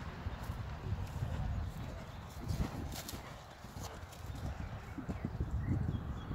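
Hoofbeats of a horse cantering on grass turf: dull, uneven thuds.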